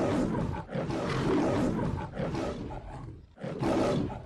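A big cat roaring, several roars in a row with short breaks between them, the last one loud again near the end.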